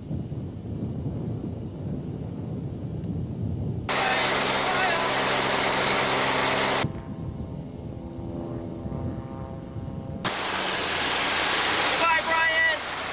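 Low wind rumble on the microphone, then, after an abrupt switch about four seconds in, the steady drone of a small jump plane's propeller engine under loud rushing wind. The sound changes suddenly again about seven and ten seconds in, as the tape jumps.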